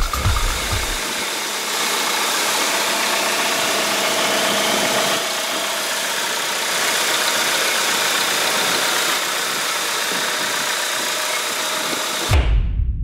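Chevrolet Aveo's E-TEC II 16-valve four-cylinder engine idling steadily, heard from above the open hood.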